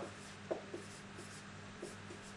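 Marker pen writing on a whiteboard: faint strokes and taps, the clearest a short tap about half a second in.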